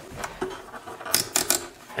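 A few short metallic clicks and scrapes, in quick succession a little past halfway, as fingers tug at a fiddle string wedged in its nut slot. The slot is too tight and is holding the string.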